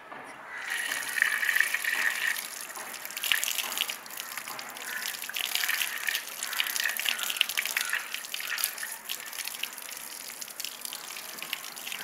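Water gushing from an outdoor plastic tap and splashing onto the ground below, starting about half a second in as the tap is opened and then running steadily.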